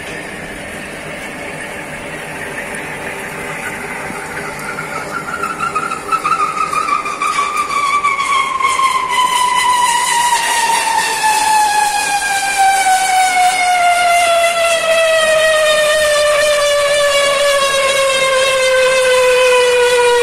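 Rebar threading machine's rotating chaser die head cutting a thread onto a TMT bar, with coolant spraying. A loud whistling squeal runs throughout, slowly falling in pitch and growing louder as the cut goes on.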